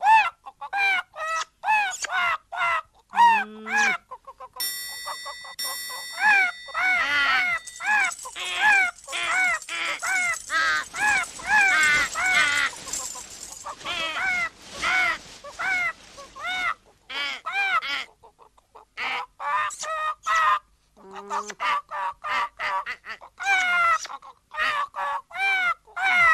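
Cartoon bird squawks: a fast run of short, repeated calls, each rising and falling in pitch, about two or three a second, thickest through the middle.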